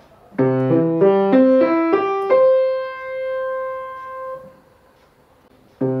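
Grand piano playing a short beginner technique exercise: a run of about seven single notes, roughly three a second, ending on one held note that rings and fades over about two seconds. After a brief pause the same phrase starts again near the end.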